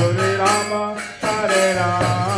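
Devotional kirtan: male voices chanting a melodic mantra over a steady low drone, with mridanga drum strokes and small hand cymbals, pausing briefly between phrases a little past halfway.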